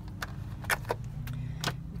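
Light clicks and taps from handling food and containers at an Instant Pot's stainless steel inner pot, four short ones spread through, over a steady low hum.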